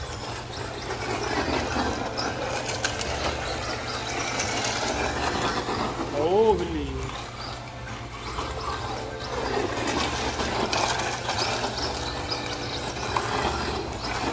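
LC Racing 1/14-scale electric RC truggy driving on loose gravel, its motor and tyres mixed with people's voices. A drawn-out exclamation comes about six and a half seconds in.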